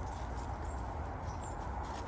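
Handsaw cutting steadily through a thick English ivy stem growing against a tree trunk.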